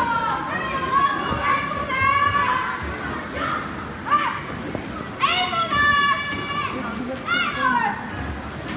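Children's high-pitched voices shouting and cheering on swimmers in a race, overlapping calls throughout, with one loud, long shout about five seconds in and another near the end.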